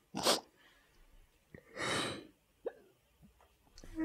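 A crying woman sniffling into a tissue: a short sharp sniff just after the start, then a longer breathy sniff or nose blow about two seconds in.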